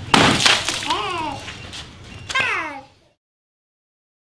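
A water balloon bursting with a sharp pop and splash right at the start, followed by a young girl's high squealing cries, two falling in pitch at about one and two and a half seconds in. All sound cuts off suddenly about three seconds in.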